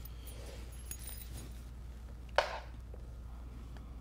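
Quiet room with a steady low hum; about two and a half seconds in, one brief soft sound as a fabric yoga strap is dropped onto the floor.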